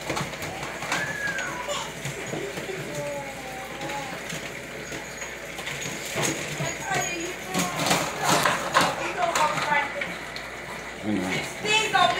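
Puppies play-fighting in a wire crate: thin high whines and yips that glide up and down, with scrabbling and rattling against the crate, busiest from about six to nine seconds in.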